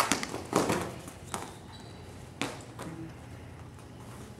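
Wrestlers' shoes and bodies thudding and scuffing on a wrestling mat during a live takedown: two sharp thuds in the first second and another a little past halfway, with softer scuffs between.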